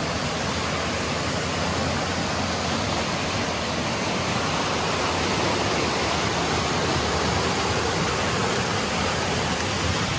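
Flood-swollen creek running in muddy rapids over rocks and tree roots: a steady, even rush of water.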